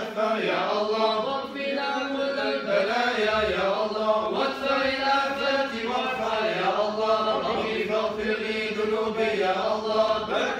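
A group of men chanting devotional verses together in Arabic, one continuous melodic chant with no pauses.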